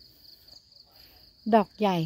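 A steady, high-pitched insect trill runs without a break, with a woman's short remark coming in near the end.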